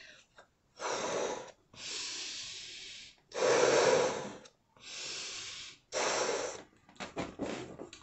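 A person blowing up a balloon by mouth: about five hard breaths, each lasting around a second, with short pauses between them.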